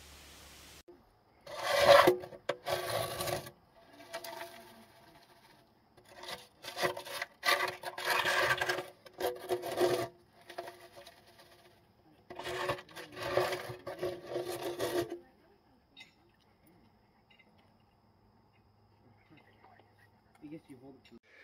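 Hand scraping of rust and grime inside an old steel wood stove's firebox, in three spells of strokes, with the metal body ringing along.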